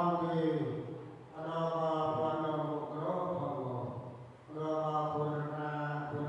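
A large group of voices chanting in unison in long, held phrases, with brief breaks about a second in and about four and a half seconds in.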